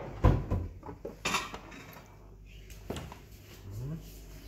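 Kitchenware clatter as a large tray is handled and brought over a cooking pot, ready to turn the maqluba out upside down: a sharp knock just after the start, then a short rattling scrape about a second later.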